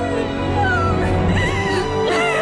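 Background drama score with a woman crying and wailing over it, her voice rising and falling in pitch.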